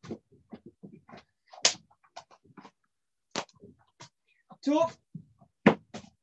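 Bare feet thudding and shuffling on a judo mat, with quick sharp breaths, as one person does burpees and judo throw entries at full speed. The sounds come as an irregular series of short knocks and rustles, with two louder sharp hits, one a little after a second in and one near the end.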